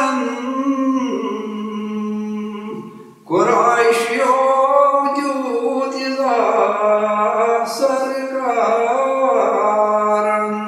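A man singing a Kashmiri Sufi manqabat (devotional praise song) in long held notes, breaking off briefly about three seconds in and coming back in strongly.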